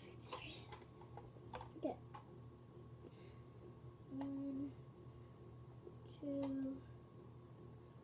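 A child's voice making two short, steady hummed notes about two seconds apart, with a few faint plastic handling clicks in the first two seconds.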